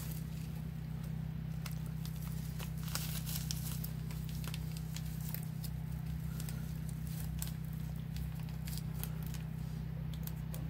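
Small plastic bag of sandy paydirt crinkling and crackling in the fingers as it is worked open, in irregular little clicks.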